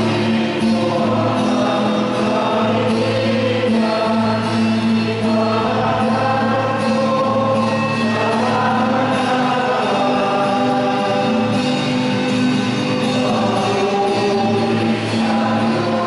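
Church choir singing a hymn with instrumental accompaniment, long held notes moving over a steady bass.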